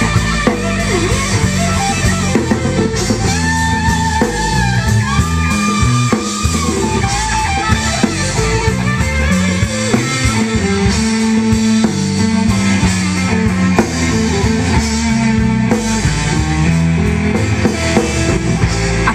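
Live blues band: an electric guitar solo on a Stratocaster-style guitar, full of bent notes, over bass guitar and drum kit.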